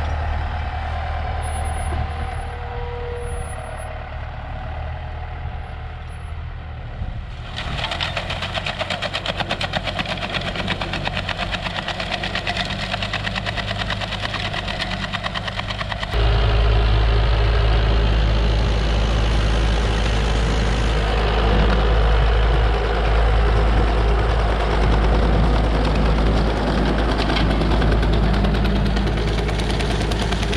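John Deere 5820 tractor's diesel engine running steadily with a Strautmann manure spreader in tow. About a quarter of the way in, a fast, dense clatter joins. About halfway, the sound cuts to a louder, deeper rumble as the spreader throws manure out.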